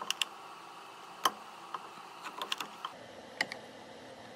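Irregular sharp clicks and light taps as a leather piece is set against a diamond chisel in an arbor press's wooden jig. The loudest click comes about a second in, with a quick run of smaller clicks a little past halfway.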